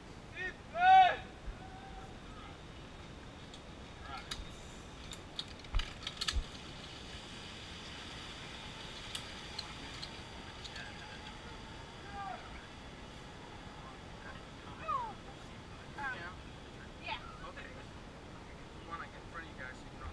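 A short loud voice call about a second in, then scattered sharp metallic clicks and knocks from zip-line harness gear being handled, with a few quieter brief voices later.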